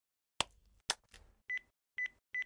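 Mobile flip phone keypad: two sharp clicks, then three short, high, steady beeps about half a second apart.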